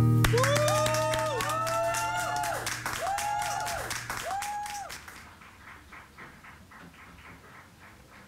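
A small audience clapping and whooping for about five seconds as the song's last low note fades out, then the applause dies away.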